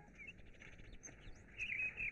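Faint bird chirps over a quiet background: a couple of short calls just after the start and a few more near the end.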